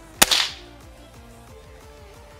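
A single air rifle shot: one sharp crack about a quarter second in, with a brief rushing tail, a shot that hits its balloon target. Faint background music with a steady beat runs under it.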